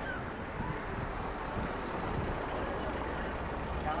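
Steady low rumble of open-air street ambience in a cobbled town square, with faint distant voices.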